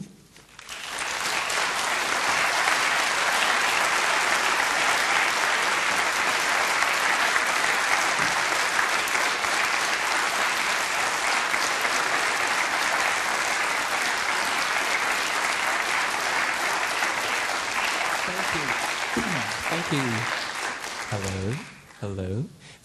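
Audience applauding: the clapping swells up within the first couple of seconds, holds steady, then dies away near the end as a man starts to speak.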